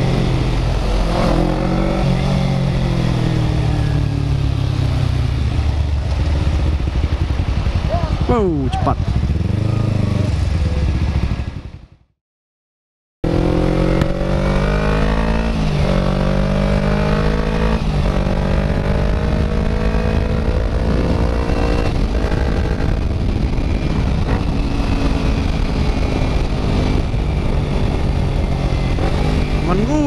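Kawasaki Ninja 250's parallel-twin engine running under way, its pitch climbing and dropping repeatedly as the bike accelerates and shifts gears. About twelve seconds in the sound fades out to silence for about a second, then the engine comes back.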